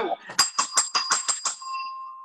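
A bell banged rapidly, about nine quick strikes in just over a second, its ring hanging on briefly after the last strike.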